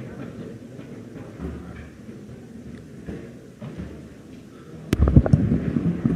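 Low room noise in a large meeting chamber. About a second before the end comes a sharp click, then loud thumps and rustling as a handheld microphone is picked up and handled.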